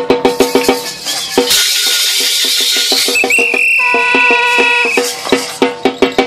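Drum played in a fast steady rhythm, about six strikes a second. It breaks off about a second and a half in for a burst of rushing noise, then comes back under a held high whistle-like tone.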